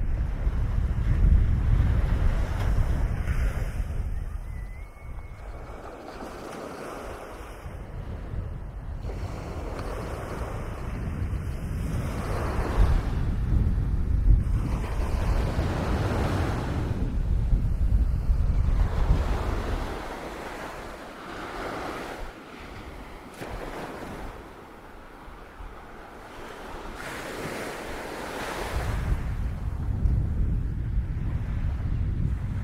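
Sea surf breaking and washing up a sandy beach, swelling and fading every few seconds, with gusts of wind buffeting the microphone as a low rumble, heaviest at the start, through the middle and again near the end.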